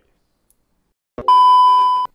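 Near silence, then a loud electronic beep a little past halfway: one steady high-pitched tone lasting under a second.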